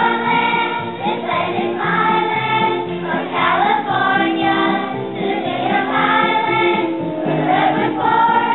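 Children's choir singing together over instrumental accompaniment, in phrases of a second or two with short breaks between.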